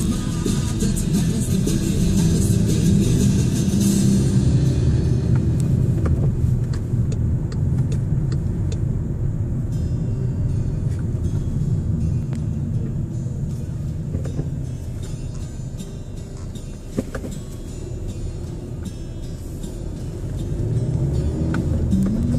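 Low, steady rumble of a car's engine and road noise heard inside the cabin while driving in town traffic. Music plays over the first few seconds and then fades out, and a single sharp click sounds late on.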